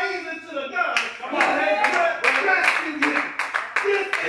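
Hands clapping, several claps a second, starting about a second in, under a man's preaching voice that carries on throughout.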